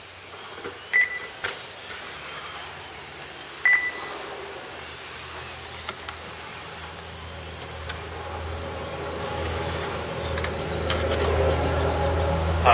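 1/10-scale electric RC touring cars racing: high-pitched motor whine that rises and falls again and again as the cars accelerate and brake through the corners. Two short beeps sound about a second in and again near four seconds, and a low hum grows louder near the end.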